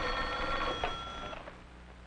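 Telephone bell ringing steadily, cut off about a second and a half in as the receiver is lifted.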